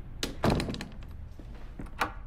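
A door shutting with a heavy thunk about half a second in, just after a lighter knock, followed by a few faint clicks.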